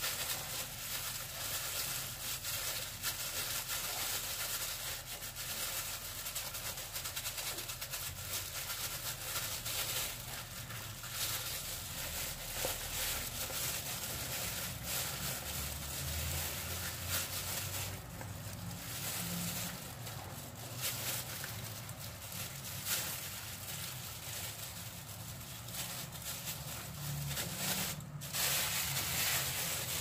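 Banana leaves and a plastic glove rustling and crinkling as the leaves are folded around the dough, with a steady crackle throughout.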